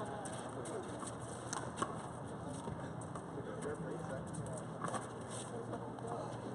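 Indistinct voices of people talking at a distance over steady outdoor background noise, with a few scattered sharp taps; the sharpest comes a little under two seconds in.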